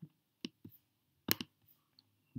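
A few separate, sharp computer mouse clicks.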